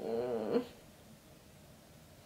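A woman's short, low, creaky hum lasting about half a second, followed by quiet room tone.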